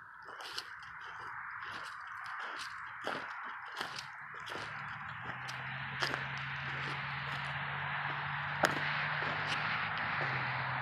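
Footsteps scuffing and crunching on a gritty concrete slab, about one step a second, over a steady outdoor hiss. A low steady hum comes in about halfway through.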